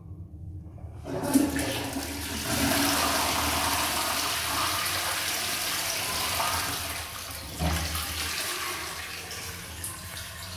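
Wall-hung toilet with a concealed cistern being flushed from its wall push-plate: water rushes into the bowl about a second in and runs strongly for some six seconds. Then it eases to a weaker flow, with a low thump as it does.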